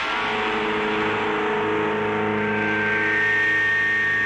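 The droning intro of a punk rock track: held, sustained tones with a pulsing note repeating about twice a second. A high steady tone swells in about halfway through.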